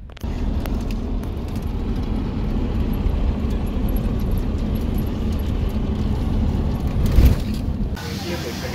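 Engine and road noise heard from inside a moving car's cabin: a steady low rumble with small rattles, and one louder bump near the end.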